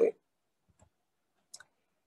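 A woman's last spoken word ends right at the start, followed by a near-silent pause with one faint short click about a second and a half in.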